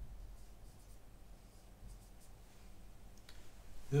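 Felt-tip marker writing a word on a whiteboard: a few faint, short squeaky scratches of the pen strokes.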